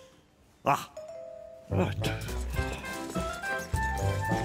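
A short sharp sound under a second in, then a held doorbell chime, then background music with a bass line and melody starting just before the halfway point.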